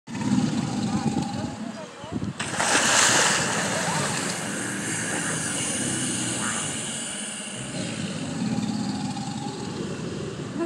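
American alligators bellowing, a low pulsing rumble. About two and a half seconds in, a sudden loud splash and churning water as a large reptile thrashes, the splashing dying down over several seconds before the low bellowing rumble takes over again near the end.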